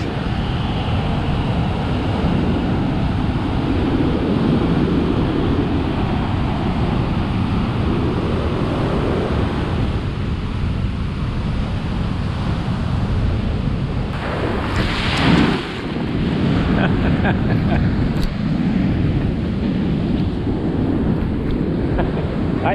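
Heavy ocean surf breaking and washing up a sandy beach, with strong wind rumble on the microphone. About fifteen seconds in, a louder, hissier rush comes as the swash runs up the sand close by.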